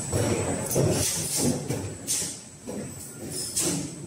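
Punch press at work forming titanium strips, with metal strips handled on the die: about four short, sharp noisy bursts over a low mechanical background.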